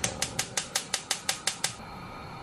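Gas stove's electric igniter clicking about six times a second, then stopping as the burner catches, followed by the steady hiss of the lit gas flame.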